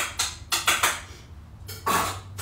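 Plates and cutlery clattering while food is served: a few short knocks, three of them close together about half a second in and one more near the end.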